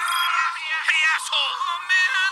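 A high-pitched, warbling electronic voice with a sung, musical quality, thin and tinny with no low end, played back from a phone.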